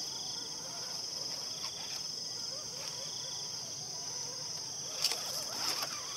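Insects chirping in a steady high-pitched chorus, with a lower trill that comes and goes about once a second. A few clicks and scuffs near the end.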